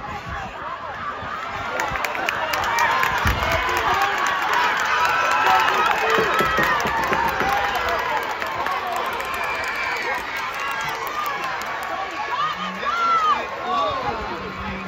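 Spectators in the stands cheering and yelling for the relay runners. Many voices overlap, swelling about two seconds in and staying loud.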